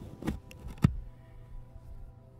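Two knocks about half a second apart, the second one louder and sharper, over faint background music.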